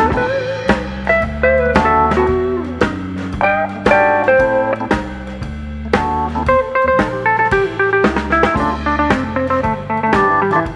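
Background music: a blues-style guitar playing held and bending notes over a steady drum-kit beat.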